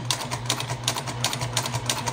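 Juki TL-2010Q straight-stitch sewing machine running at a steady speed, its needle mechanism ticking rapidly and evenly over a low motor hum as it sews a seam through two layers of fabric.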